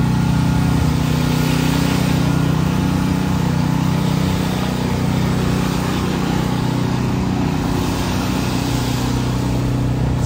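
A steady low engine hum, like a vehicle idling, with an even hiss over it.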